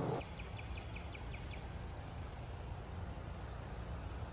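A bird gives a quick run of about eight short, high chirps in the first second and a half, over steady low outdoor background noise.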